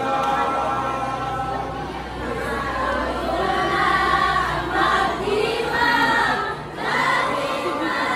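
Choir of women and girls singing together, with a short break between phrases near the end.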